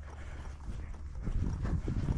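A hiker's footsteps on a mountain trail: a run of soft, irregular thuds that grows louder in the second half, over a low steady rumble.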